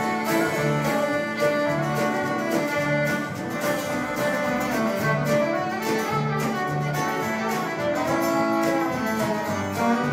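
Live country band playing an instrumental break: fiddle carrying the melody over strummed acoustic guitar, upright bass and a drum kit.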